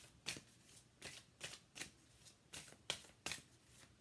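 A large deck of angel oracle cards being shuffled by hand, with about ten soft, short strokes of card against card, two to three a second.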